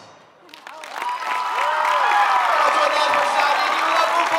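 The last ring of a drumline's final hit fades away. About half a second in, an audience breaks into applause and cheering, with high whoops and whistles over the clapping.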